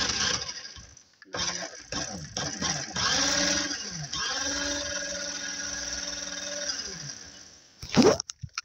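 Electric motor of a LEGO car whirring as it spins the wheels freely with the car upside down. The pitch wavers about three seconds in, holds steady for a few seconds, then winds down near the end.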